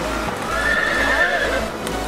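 A horse's whinny: a high, wavering call that holds and then falls away in pitch. It is heard over background sound.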